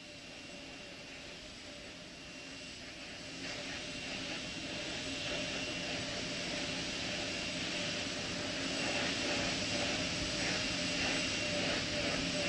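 Space Shuttle auxiliary power units and hydraulics running while the three main engine nozzles are swung through their final pre-launch gimbal test. The sound is a steady rushing noise with a few held whining tones, growing louder over the first few seconds and then holding.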